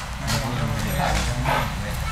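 A group of men chanting Sanskrit mantras together during a fire ritual: a steady low drone of voices, with hissing consonants cutting through about a third of a second, one second and one and a half seconds in.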